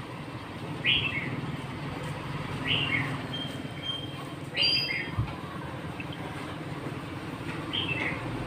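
A bird chirping, a short falling call every two seconds or so, over a steady low background rumble.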